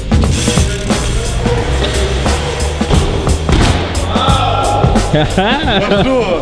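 Bike tyres rolling on wooden skatepark ramps, with scattered knocks, over background music; voices come in near the end.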